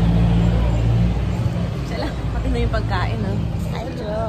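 Indistinct voices over a low, steady hum that weakens after about a second.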